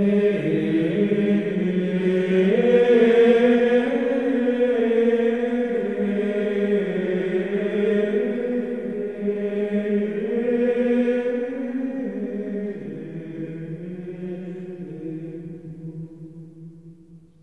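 Monastic men's choir singing Gregorian chant in unison: a slow line of long held notes that step up and down. A new phrase begins right at the start, and near the end it sinks lower and fades away into the reverberation.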